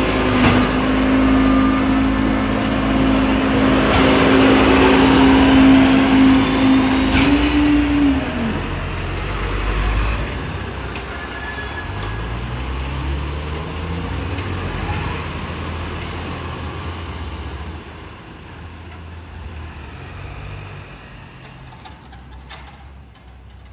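Rear-loader garbage truck: a steady hydraulic whine runs for about the first eight seconds and then cuts off, with a short hiss near the end of it. The diesel engine then revs up as the truck pulls away and fades into the distance.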